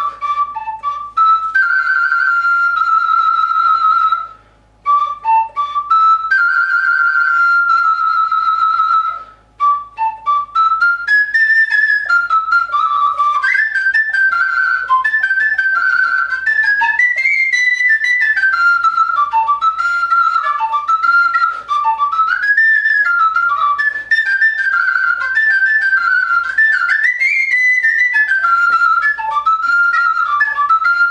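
Ukrainian sopilka, a chromatic wooden fipple flute, playing a melody. It opens with long held notes, each phrase ending in a short break for breath, and from about ten seconds in a quicker, ornamented tune rises and falls.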